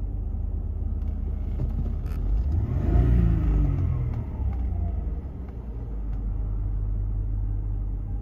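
Audi cabriolet engine idling, then revved once to about 3,000 rpm about three seconds in and let fall back to idle.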